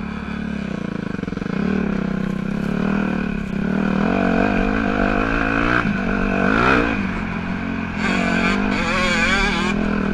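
Dirt bike engine heard close up from the bike, revving up and down as it rides a climbing hill trail. Its pitch rises and falls several times, with sharper bursts of revs about two-thirds of the way in and again near the end.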